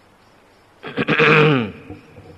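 An elderly man coughs into a microphone about a second in: two quick cough onsets running into a short voiced tail that falls in pitch.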